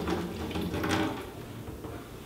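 Methanol poured from a plastic measuring beaker into a large empty plastic water-cooler bottle: a thin stream trickling and splashing inside the hollow bottle.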